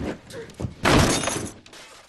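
Glass smashing in a few crashes, the loudest about a second in.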